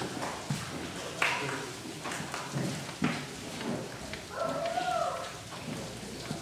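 Room sound in a pause between pieces: scattered light knocks and taps, and a brief faint voice about four seconds in.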